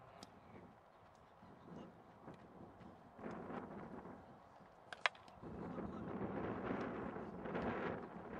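Wind blowing on the microphone, much stronger from about five and a half seconds in, with one sharp crack just before it and a few faint clicks.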